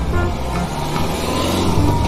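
A pickup truck's engine running as it drives in, as a cartoon sound effect over light background music.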